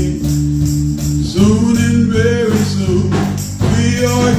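Live gospel music: held keyboard chords and a drum kit, with a voice singing over them from about a second and a half in.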